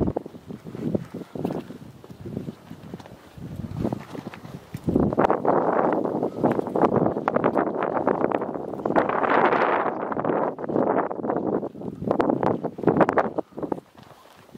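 A hiker's footsteps on bare rock: a run of hard steps, quieter at first, then louder and busier from about five seconds in until shortly before the end.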